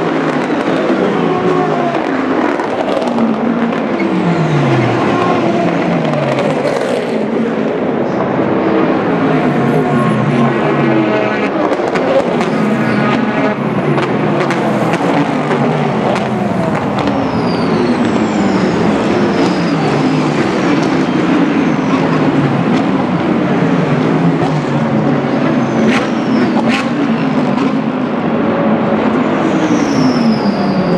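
Sports-prototype and GT race cars passing at speed one after another, a near-unbroken run of engine sound in which each car's note drops in pitch as it goes by.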